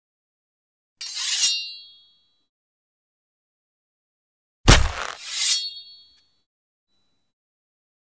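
Two metallic clangs, each with a ringing tail. The first swells up about a second in and fades. The second, midway, is a sudden heavy hit with a low thud and a longer ring.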